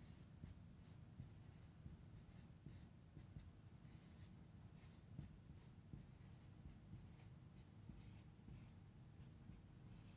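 Faint strokes of a marker pen on a whiteboard as an equation is written out: a quick, irregular run of short scratchy strokes, sometimes several a second, with brief pauses between symbols.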